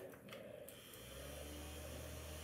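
Faint, steady low hum that starts about a second in: the small battery-powered motor of an O2COOL handheld mist fan switched on and running.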